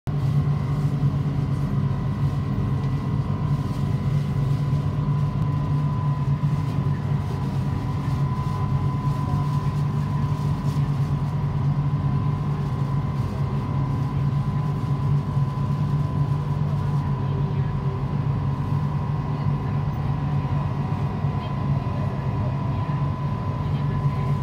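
Steady cabin hum of a driverless Kelana Jaya Line LRT train standing at a station platform: an even low drone with a faint steady high whine over it, with no sound of movement.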